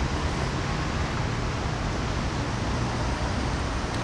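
Steady city traffic noise: an even hiss with a low rumble underneath, no single event standing out.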